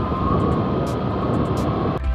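Motorcycle on the move: a steady rush of wind and road noise over the engine, with a thin steady whine running through it.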